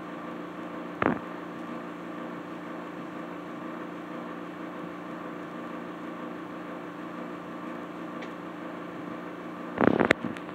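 A steady electrical hum with a hiss under it. There is a single sharp knock about a second in, and louder knocks and clicks right at the end.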